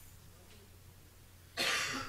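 A quiet pause with a faint low hum, then a single short cough near the end.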